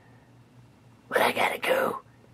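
A short, breathy whispered voice, starting about a second in and lasting under a second.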